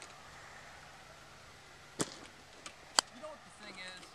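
A golf putter strikes the ball with one short sharp click about two seconds in, and a second sharp click follows a second later.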